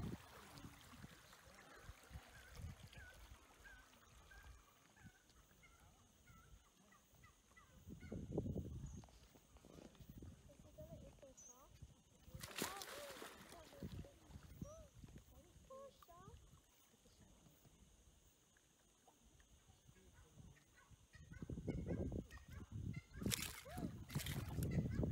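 Quiet outdoor background with scattered short bird calls, some low murmuring swells, and one brief loud rush of noise about halfway through.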